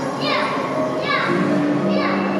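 Voices, including children's, over background music, with a high falling glide repeating about every three-quarters of a second.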